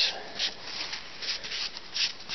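Wet paper towel rubbed over a plywood board in several short strokes, a soft scuffing swish with each stroke as baking soda water is spread on the wood.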